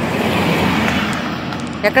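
A small car passing close by on a narrow road, its tyre and engine noise swelling and then fading as it drives away; a voice starts near the end.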